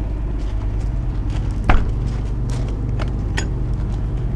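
Steady low hum of the motorhome's 8,000-watt Onan quiet diesel generator running. A few light clicks and one sharper knock come a little before the middle.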